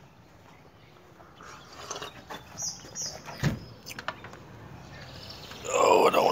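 Birds chirping outdoors, a handful of short high chirps between about one and a half and three seconds in, with a single thump about three and a half seconds in and a few light clicks just after.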